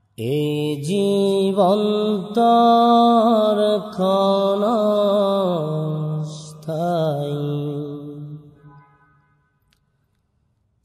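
A Bangla Islamic song: one voice singing long, held notes with wavering ornaments, fading out near the end.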